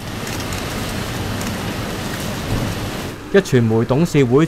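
Steady, even hiss of outdoor location ambience. A narrator's voice begins a little over three seconds in.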